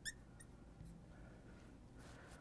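Near silence, with a brief high squeak right at the start and a faint click about half a second in: a marker writing on a glass lightboard.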